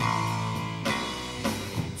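Live rock band playing between sung lines: an electric guitar chord rings out on the first beat over bass guitar and drum kit, with drum hits about a second in and again shortly after.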